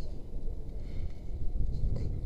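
Wind buffeting the action camera's microphone: a low, uneven rumble with no other clear sound.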